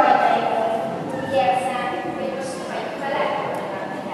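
A girl speaking into a handheld microphone, her voice amplified.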